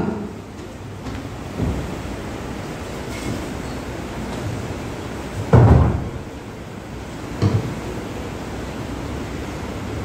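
Steady low background rumble of a large hall, broken by a few dull thumps, the loudest about five and a half seconds in.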